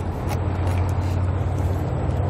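A steady low drone like an idling vehicle engine, with a few faint clicks.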